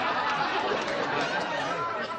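Studio audience laughing after a joke, the laughter slowly dying away, with some talk from the stage mixed in near the end.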